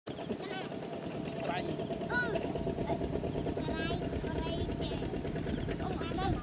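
A small motorcycle engine running steadily with a rapid low pulsing. Short high squeaky calls sweep up and down over it several times.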